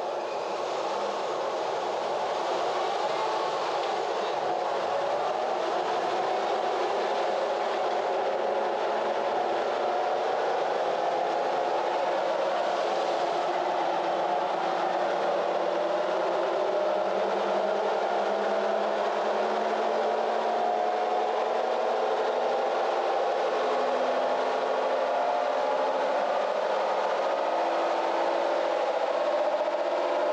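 Supercharged Toyota Tacoma's 5VZ-FE V6 driving the chassis dyno's rollers in gear: a steady drone whose pitch climbs slowly and evenly throughout.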